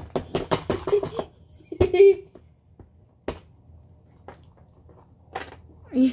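A small plastic tool tapping and scraping at a hard-packed toy crate to break it open: a quick run of sharp clicks and taps at first, then fewer, fainter ticks. A short vocal sound comes about two seconds in.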